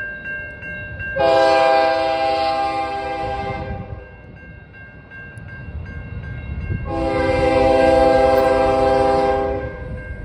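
Air horn of CN ES44DC locomotive 2240 sounding two long blasts for the grade crossing, the first about a second in and lasting about two and a half seconds, the second near the end lasting about three seconds: the opening of the long-long-short-long crossing signal. The crossing's warning bell rings steadily underneath.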